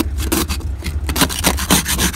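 Small hand ice scraper scraping solid ice off a 1973 VW Beetle's windshield in quick, repeated strokes, several a second, over a steady low hum.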